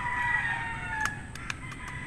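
A rooster crowing faintly, one drawn-out call that fades about a second in, followed by a few faint sharp clicks.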